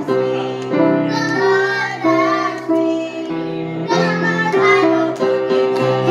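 Children singing a song with grand piano accompaniment.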